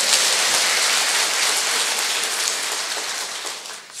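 Congregation applauding: dense, even clapping that fades a little near the end.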